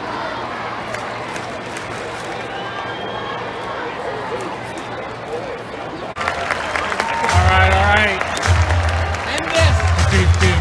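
Ballpark crowd murmur with scattered voices. About six seconds in it cuts to a louder stretch of stadium sound-system audio: held low notes starting and stopping in blocks, under a wavering higher voice or melody.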